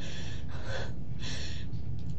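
A person's breath: three short breathy puffs in quick succession, like gasping or sighing, over the steady low hum of the interview-room recording.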